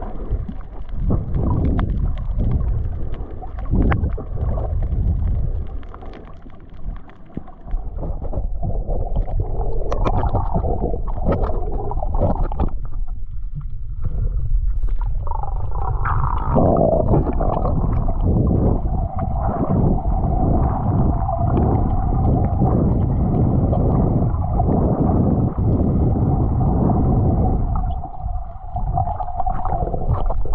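Muffled sound of water as heard by a camera held just under the surface while snorkelling: a low rumble of water sloshing and gurgling around the housing. About halfway through a steady hum joins it and runs on.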